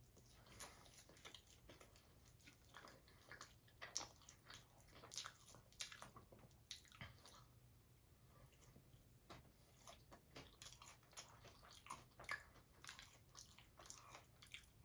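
Faint, close chewing of a mouthful of nacho fries topped with crunchy tortilla strips: an irregular run of soft crunches and mouth clicks.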